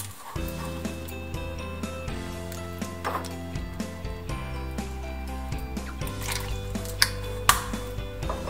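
Background music with steady held notes, with a few short clicks and knocks, the loudest two near the end.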